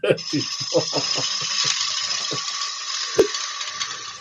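A bowl gouge cutting the rim of a wooden bowl spinning on a wood lathe, with a steady hiss of shavings coming off the wood. A single sharp click comes about three seconds in.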